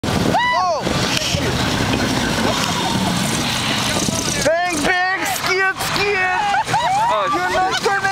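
Snowmobile engine running, with one high howl under a second in. From about four and a half seconds a team of sled huskies breaks into many short, overlapping high yelps and howls, each rising and falling in pitch.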